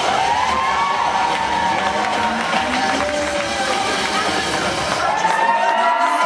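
Music playing in a large hall, with the crowd cheering and shouting over it while the flyer is held up in a partner stunt.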